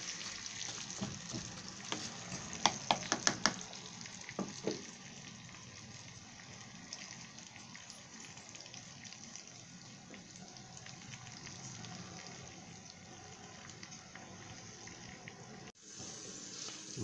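Meat, onions and parsley sizzling in a tagine base over a gas burner: a steady hiss, with a quick run of sharp clicks between about two and five seconds in.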